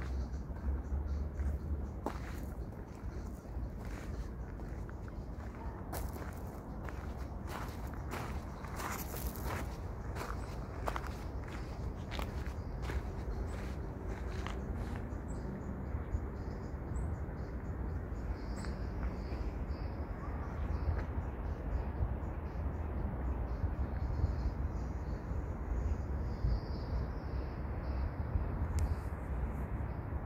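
Footsteps of someone walking outdoors, over a steady low rumble of wind on the microphone. A run of sharp clicks comes about six to fifteen seconds in, and faint high chirps follow later on.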